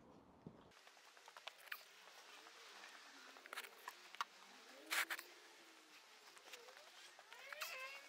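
Faint, scattered knocks and clatter of garden pots and a plastic watering can being picked up and carried, the loudest knock about five seconds in.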